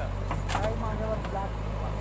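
Steady low drone of a JCB 3DX backhoe loader's diesel engine running while it works its backhoe arm, unloading and swinging the bucket.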